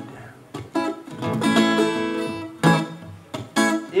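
Acoustic guitar playing a chordal accompaniment on its own: a few sharp strums, with one chord left ringing in the middle. A man's singing voice comes in at the very end.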